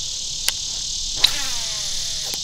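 Crickets and other insects buzzing steadily. A sharp click about a second in is followed by a faint falling whine as a baitcasting reel's spool spins out on a cast.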